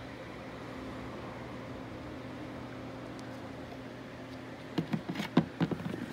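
A steady low mechanical hum in the room, then a quick cluster of sharp knocks and clatters near the end as things are handled and moved about.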